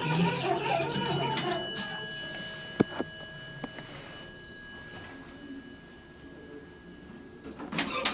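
An elevator chime strikes once about a second in and rings on for several seconds, fading slowly, over a rattling mechanical sound that dies away. A few sharp clicks follow, and a louder rattle starts near the end.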